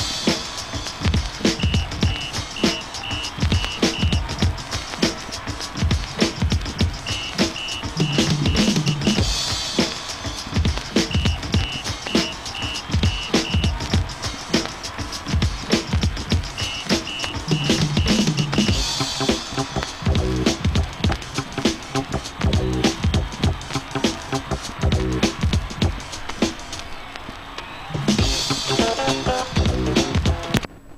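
A vinyl record playing music with a steady drum beat, picked up by the Ion USB turntable's ceramic cartridge and amplified through a homemade high-impedance PiezoMatch preamp in a test of its sound quality.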